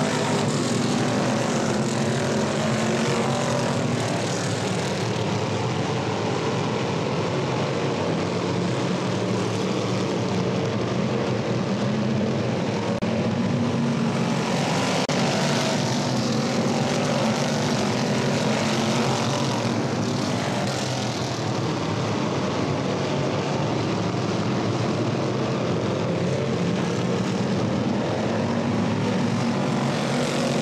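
Engines of several classic-bodied dirt-track race cars running hard as a pack laps the oval. Their pitches shift and overlap in a steady din that swells as the cars come past.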